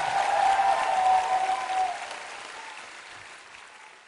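Concert audience applauding as a live song ends, with a thin held tone for the first two seconds; the applause fades away.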